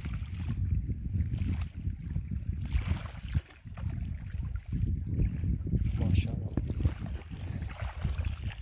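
Wind buffeting the microphone: a gusty low rumble that rises and falls over the whole stretch.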